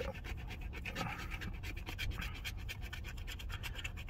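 A fingernail scratching the coating off a paper lottery scratch-off ticket in rapid, repeated short strokes.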